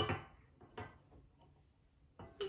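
Quiet kitchen with a faint tap or two, a small ceramic dish touching a stainless steel mixing bowl as baking soda is tipped in. At the start, the end of a child's sung word fades out.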